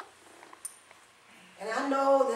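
A few faint clicks and knocks in a quiet room, then a woman's voice begins about a second and a half in, held on one drawn-out pitch.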